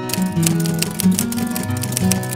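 Intro background music led by acoustic guitar, plucked notes over a steady low bass line, with quick bright percussive ticking layered over it.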